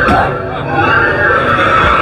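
Loud, dense soundtrack of eerie effects and music playing through a haunted maze, with a sharp hit right at the start.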